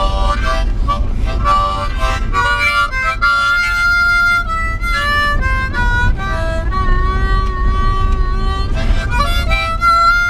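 Harmonica played with cupped hands: a melody of quick short notes at first, then longer held notes. A steady low rumble of road noise from inside the moving car runs under it.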